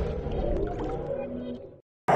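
The reverberant tail of an electronic intro jingle fading away, then cutting off to silence just before the end.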